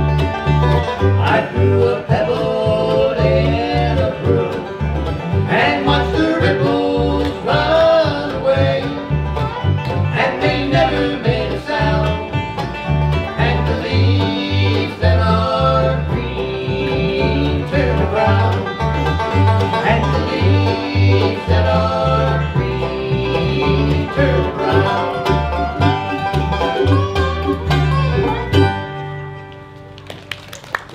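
Bluegrass band playing an instrumental passage on banjo, mandolin, acoustic guitar and upright bass, without vocals, over a steady pulsing bass line. The song ends about a second and a half before the close.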